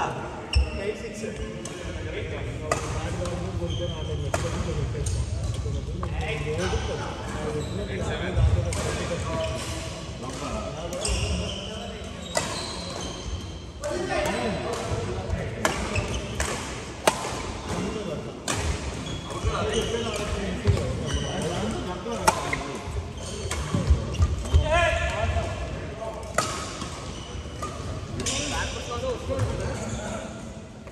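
Badminton rackets striking a shuttlecock again and again through rallies, sharp cracks at irregular intervals in a large hall.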